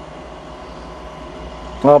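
Steady low mechanical hum of running machinery, with a faint steady whine over it.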